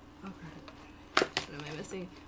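A woman's voice murmuring softly, then a short low hum near the end. Two sharp clicks come a little past the middle. A faint steady tone runs underneath.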